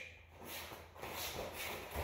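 Faint shuffling of feet on the floor and rustling of gi cloth as two grapplers circle and level change.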